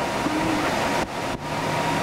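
Steady noise of an idling car with a thin high hum running through it and faint voices underneath; it drops out briefly about a second in.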